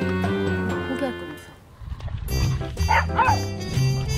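Soft background music, then from about halfway a dog barking in short yelps during rough play, with the music running on underneath.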